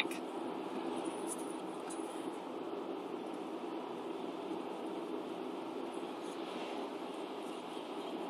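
Steady road noise of a moving car heard from inside the cabin: engine and tyre hum, even and unchanging.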